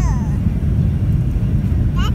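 Steady low rumble of a passenger airplane heard inside the cabin, with a toddler's brief high-pitched vocal sound at the very start.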